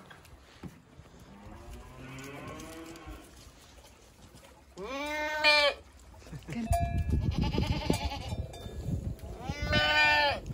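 Goats bleating, four calls in all: a faint quavering bleat about two seconds in, a loud bleat at about five seconds, another quavering bleat a couple of seconds later and a loud one at the very end. Low rumbling noise runs under the second half.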